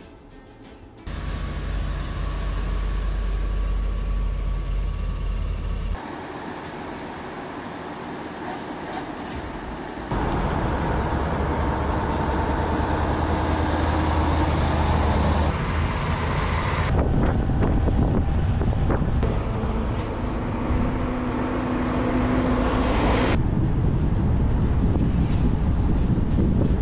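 Convoy of six-wheeled military trucks driving by, their engines giving a steady low drone. The sound changes abruptly several times as one stretch of convoy footage gives way to another.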